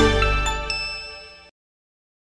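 Closing jingle of a TV station's logo ident: a few bell-like chimes ring out over fading music, then the sound cuts off abruptly about a second and a half in.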